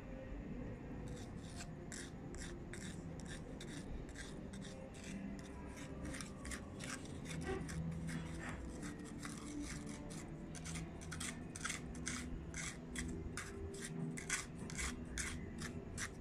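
A small magnet scraped and stirred through wet ground pyrite sediment in a panning dish, to draw out the iron in the ore. It makes quick, faint scraping strokes, about three a second, starting about a second in.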